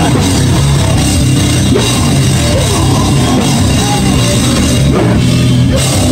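A live rock band playing loud, a drum kit driving it, heard from inside the crowd.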